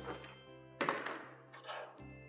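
A black plastic tray set down on the table with a thunk about a second in, followed by a lighter knock near the end, over soft steady background music.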